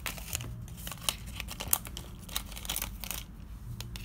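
Pineapple-cake packaging crinkling as it is handled, in irregular crackles.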